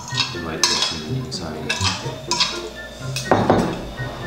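Metal spoon and fork clinking and scraping against ceramic plates as food is served and picked at, a quick run of sharp clinks with a louder clatter about three seconds in.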